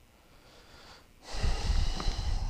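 A faint breath, then from just over a second in a louder rustle with low bumps from a man shifting his body and clothing as he turns.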